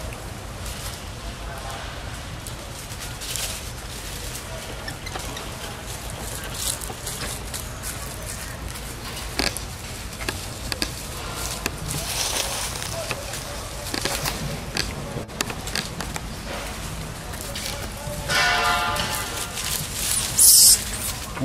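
Dry leaf litter crackling and rustling under macaques moving about, over a steady low hum. Near the end there is a short pitched call.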